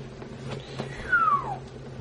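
A single short animal call that falls steadily in pitch over about half a second, a little past a second in, over a faint steady hum.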